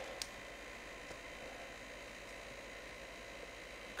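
Quiet room tone: a steady hiss with a faint low hum, and one short faint click shortly after the start.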